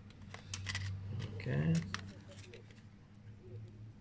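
Light clicks and rattles of plastic blister packs of spinner lures being handled and swapped, several quick clicks in the first second, over a low steady hum.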